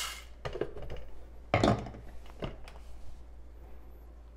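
A few short, sharp knocks of plastic on plastic as the bean hopper of a Breville Barista Pro's grinder is closed with its lid and the dosing cup is set down. The loudest knock comes about one and a half seconds in. The last of the poured beans rattle briefly at the very start.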